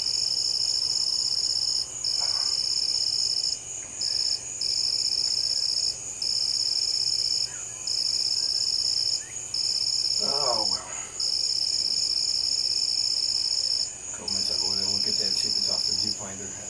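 Night insects trilling loudly: long, even trills of about a second and a half each, broken by short pauses, over a steadier, higher pulsing chorus.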